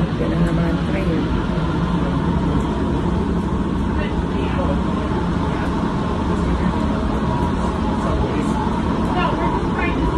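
Seattle-Tacoma Airport's automated underground train running, heard from inside the car as a steady rumble with a constant hum, and faint passenger voices now and then.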